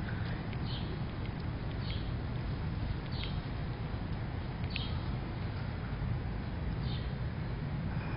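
Short, high bird chirps, about five spread over several seconds, over a steady low outdoor rumble.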